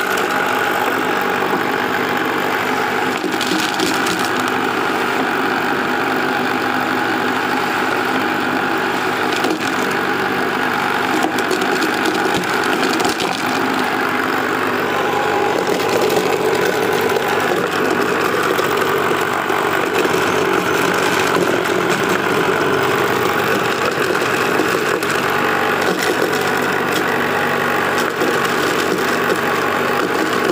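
Homemade wooden corn sheller driven by a salvaged water-pump electric motor, running steadily with a constant hum. Scattered knocks and clatter come from corn cobs and kernels being thrashed inside the box.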